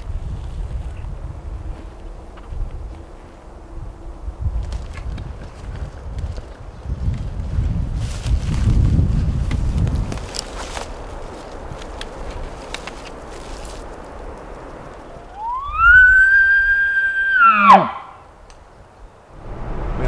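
Elk bugle: a whistle that glides up, holds high for about a second and a half, then drops sharply into a low note, sounding briefly about fifteen seconds in.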